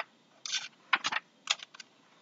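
Typing on a computer keyboard: short, irregular clusters of key clicks.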